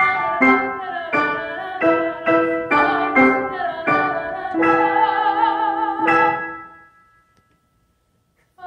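A soprano singing classical art song with piano and violin: a run of short notes, then held notes with vibrato. The phrase dies away about seven seconds in.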